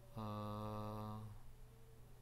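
A man's voice holding one flat, drawn-out hesitation sound ("emmm") for a little over a second, then stopping.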